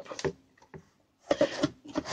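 Cardboard shipping box being opened by hand: flaps rustling and scraping in two short spells, with a quiet pause of about a second between them.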